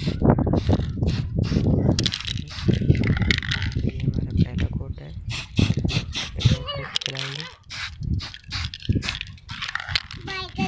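Aerosol spray-paint can spraying paint onto a plastic indicator cover in short, repeated hisses.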